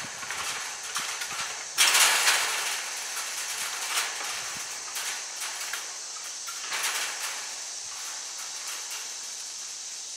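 A roll of wire mesh being unrolled and dragged across a wooden pole frame, rattling and scraping in irregular bursts, loudest about two seconds in and again near seven seconds.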